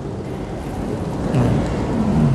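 Low, steady rumbling background noise, with a short murmur of a man's voice about one and a half seconds in.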